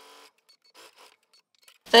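A sewing machine runs faintly and stops about a quarter second in, followed by near silence with a few soft clicks. A woman starts speaking at the very end.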